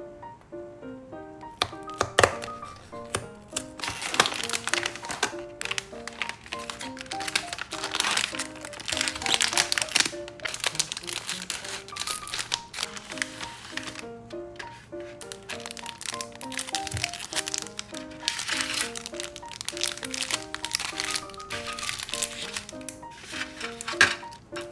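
Crinkling and rustling of the candy kit's plastic and foil sachets being handled, in two long spells, over background music with a light stepping melody. A sharp snap sounds about two seconds in.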